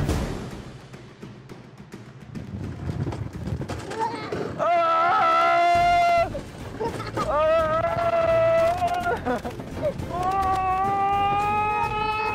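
Three long, drawn-out wordless yells from a rider on an alpine coaster, each held for one to two seconds.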